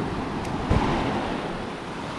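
Small waves washing up a sandy beach, with wind rushing over the microphone and a short low thump under a second in.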